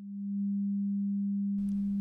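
Low synthesizer drone: a single steady pure tone that fades in over the first half second and then holds. A faint hiss comes in near the end.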